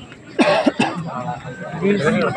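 Men talking close to the phone, with a sudden loud vocal burst about half a second in.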